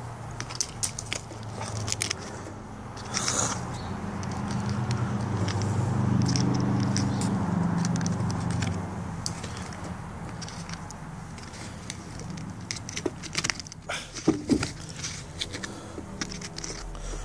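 Small clicks and crackles of fingers picking grit and debris out of a rubber-coated boot sole's treads. Under them, a low hum swells in the first half and fades away.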